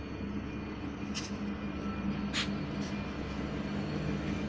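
Multiple-unit diesel locomotives passing with a steady engine drone, broken by three short hisses about one, two and a half, and three seconds in.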